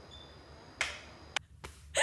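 Quiet, with a short breathy burst of noise just under a second in, followed by a single sharp click.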